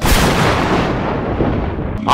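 A cinematic boom sound effect: a sudden heavy hit that trails off as a rumbling hiss, its high end fading over about two seconds, then cuts off just before speech resumes.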